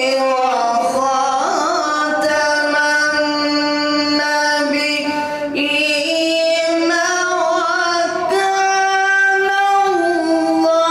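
A man reciting the Quran in the melodic tajwid style into a microphone, with long held notes that step and glide in pitch.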